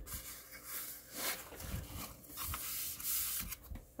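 Hands rubbing and smoothing cardstock down onto journal paper, soft paper-on-paper sliding that comes in several short swells.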